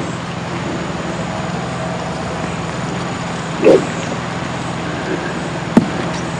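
Steady low hum and hiss of outdoor course ambience on an old golf telecast's sound track. A short, louder sound comes a little past halfway, and a single sharp click comes just before the end.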